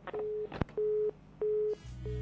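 Telephone busy tone: a single steady pitch beeping on and off, about a third of a second on and a third off, three times, with a few line clicks. Music with guitar comes in near the end.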